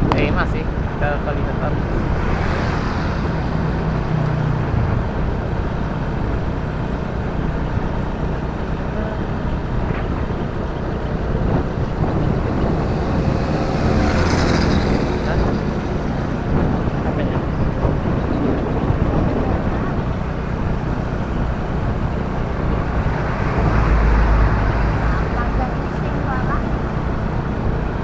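Steady riding noise from a moving motorcycle: engine and road noise with wind on the microphone, and a louder swell of noise about halfway through.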